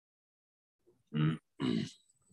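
A man's voice: after about a second of dead silence, two short low vocal sounds, each about a quarter of a second long.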